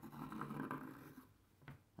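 Pencil scratching faintly on cloth as it traces around the rim of an adhesive-tape roll, for just over a second, then near silence broken by a small click.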